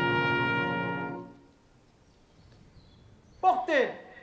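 A military brass band with drums holds its final chord, which cuts off a little over a second in and rings away. Near the end a loud voice calls out twice in quick succession, a shouted parade command.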